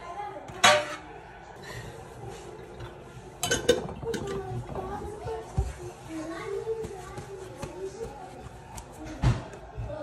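Kitchen handling sounds: a sharp clack of a knife against a stainless steel tray under a second in, then knocks and a scrape as a glass salad bowl is moved across the counter, with another knock near the end.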